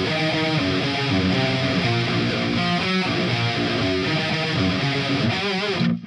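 Electric guitar with heavy distortion playing a steady metal riff, the notes changing throughout, cutting off suddenly just before the end.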